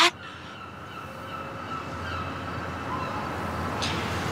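Soft background score of a few long held tones under the dialogue pause, slowly growing louder.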